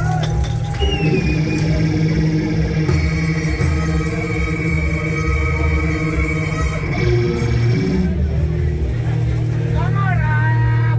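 Rock band playing live in a club: electric guitar, bass and drums, loud and steady with a heavy low end.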